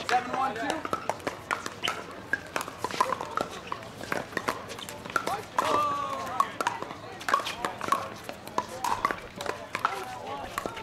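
Pickleball paddles popping against plastic balls, many sharp irregular hits from this and the surrounding courts, over indistinct chatter of players and onlookers.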